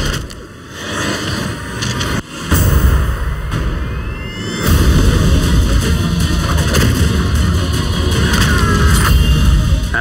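Action-trailer soundtrack of music with deep booms and explosion effects. A rising whine builds to a sudden loud, bass-heavy hit about five seconds in.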